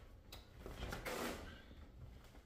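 A shopping bag being handled and rustling, with a brief swell of rustle about a second in and a few light knocks.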